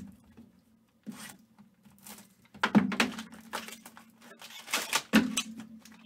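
Foil wrapper and packaging of a trading-card box being handled and torn open: a string of short, irregular crinkles and rips, over a faint steady hum.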